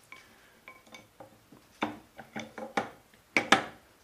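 Steel gear parts of a Gen 2 Toyota Prius transaxle's power split device clinking and knocking as the planet carrier is slid down the sun gear shaft and seated in the case. A run of small metallic clicks, a few with a short ring, and the two loudest knocks near the end.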